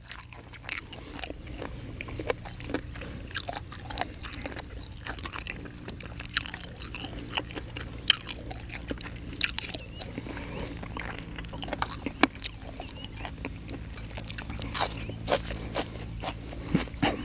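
A person chewing and crunching a mouthful of fresh raw herbs and vegetables eaten with rice noodles and green curry, close to the microphone. Irregular crisp crunches and mouth clicks come one after another throughout.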